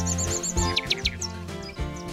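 Instrumental music with bird chirps over it: a quick run of chirps at the start and a few sharp falling chirps about a second in.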